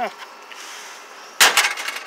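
A sharp clunk, then a short rattle of clicks, as sheet-metal scrap computer parts are shifted and knock together, about one and a half seconds in.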